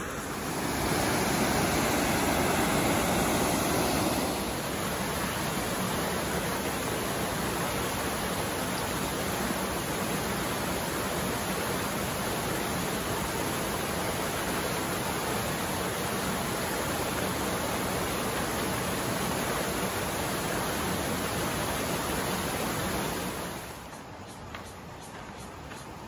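Rocky mountain stream rushing over stones, a steady wash of water noise that is louder for the first few seconds.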